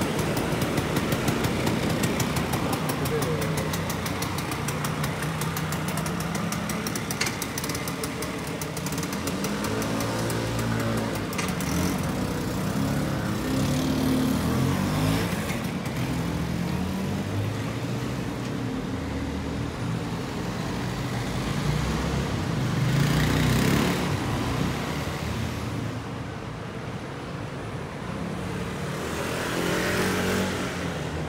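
City street traffic: a Vespa scooter's small engine idling close by for the first several seconds, then other vehicle engines passing and changing pitch, with people's voices in the background.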